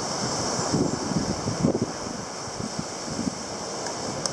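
Wind buffeting the microphone in irregular gusts, over a steady hiss of surf on the beach.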